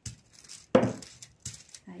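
Metallic laminating foil crinkling and rustling as a hand presses and rubs it against a glass jar, with a few short knocks and clinks, the loudest just under a second in.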